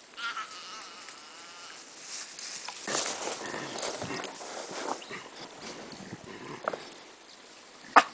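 A bushbuck calf's wavering, bleat-like distress cry in the first couple of seconds: the calf is dying as a chacma baboon eats it. About three seconds in, louder rustling noise with scattered clicks takes over.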